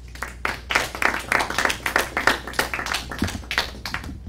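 A small audience applauding, with many separate hand claps, starting a moment in.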